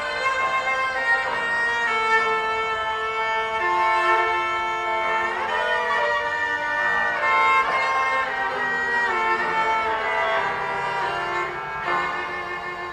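Cello bowed in a sustained, singing melody with a few sliding shifts between notes, accompanied by piano.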